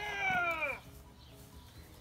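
A person's drawn-out, wordless vocal sound, about a second long, sliding downward in pitch, then only faint background.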